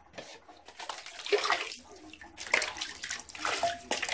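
Water splashing and lapping in a bathtub as a pet squirrel swims in it, coming in uneven bursts about once a second.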